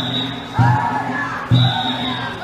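Danjiri festival music: a big drum beating steadily about once a second while a group of pullers chants in time, with a short shrill whistle near the start and again near the end.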